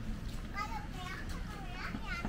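Young children's high-pitched voices talking and calling out, over a steady low background rumble.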